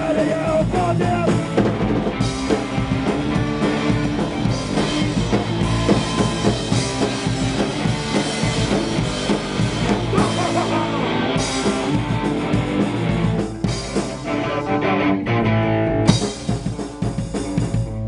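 Hardcore punk band playing in a rehearsal room: distorted electric guitars, bass and drum kit, with vocals at the mic. Near the end the playing thins out, and one loud hit comes about two seconds before the end.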